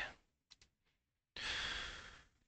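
Silence, then about a second and a half in a man's long exhaled sigh close to a headset microphone, a breathy hiss that fades away.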